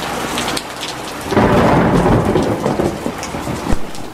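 Thunderstorm sound effect: steady rain with thunder rumbling, growing louder about a second and a half in.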